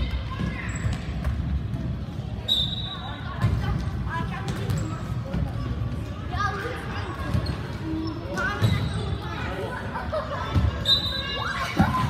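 Soccer ball being kicked and bouncing on a hardwood gym floor, a dull thud every second or two, under the steady chatter and shouts of players and spectators, all echoing in a large gymnasium.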